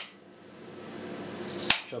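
A kitchen knife chops through a raw carrot onto a cutting board, making one sharp knock about 1.7 seconds in. A faint steady hum sits underneath.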